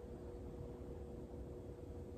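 Quiet room tone: a faint, steady background hum with no distinct sounds.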